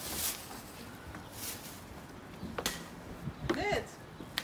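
A few brief rustles and one sharp click, then a person's short exclamations near the end.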